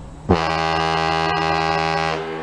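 A ship's horn sounding one long, loud blast: it starts about a third of a second in with a quick upward swoop in pitch, then holds one steady, rich tone for nearly two seconds.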